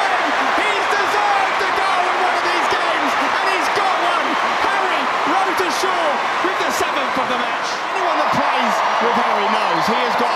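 Large stadium crowd cheering and shouting just after a goal: a dense roar of many voices with overlapping rising and falling shouts, steady and loud, easing slightly near the end.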